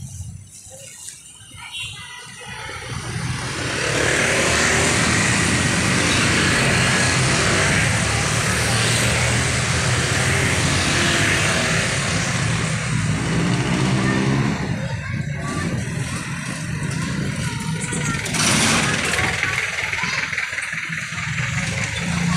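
Motor vehicles passing close on a city street: engine and tyre noise builds about three seconds in, stays loud for about ten seconds, then eases, with another swell near the end.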